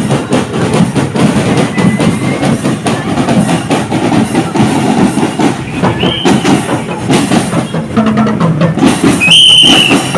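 Marching drum-and-lyre band playing, snare and bass drums beating a steady cadence among parade crowd noise. A high piercing tone cuts in briefly about six seconds in and again, louder, near the end.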